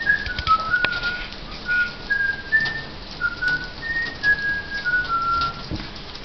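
A person whistling a slow tune: about a dozen short, pure notes stepping up and down in pitch, with a few sharp ticks in between.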